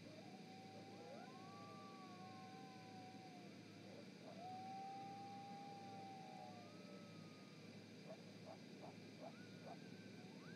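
Faint chorus of several canines howling together in long, overlapping, wavering howls, breaking into short rising yips near the end.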